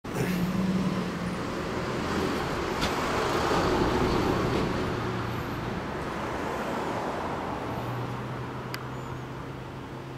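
Kawasaki Zephyr 1100's air-cooled inline-four engine idling through a MID-KNIGHT 'Monaka' aftermarket silencer, a steady low exhaust note that swells a little around three to five seconds in.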